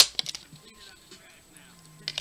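A CD snapping free of the plastic hub of its jewel case: one sharp click, followed by a few lighter clicks as the disc and case are handled.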